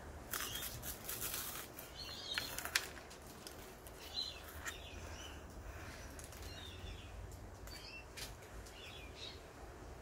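Crunching and chewing of a dry Weet-Bix wheat biscuit, a run of sharp crisp cracks in the first three seconds, then quieter chewing, with small birds chirping now and then in the background.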